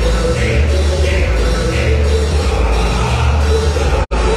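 Loud dance music with heavy bass played by a sonidero's DJ rig over the sound system.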